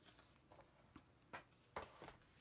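Faint handling of cardstock as a card base is folded, with two short crisp taps or creases near the end.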